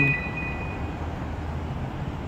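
Steady low rumble of city street traffic. Two thin, high steady tones carry on briefly and fade out within the first second.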